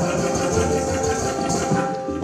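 Live Hindustani classical accompaniment for Kathak dance: violin and bamboo flute carrying a melody over tabla drumming.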